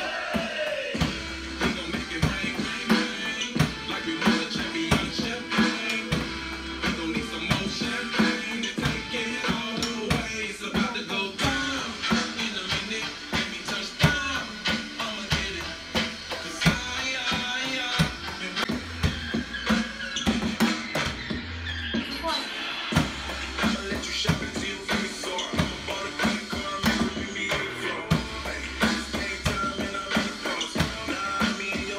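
An electronic drum kit played with sticks along to a recorded backing song: a steady rock-pop beat of kick, snare and cymbal hits running continuously under the music.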